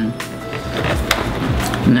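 The sealed lid of a cardboard cup of fry-shaped potato snacks being peeled open: a rustling tear with a couple of sharp clicks. Background music plays underneath.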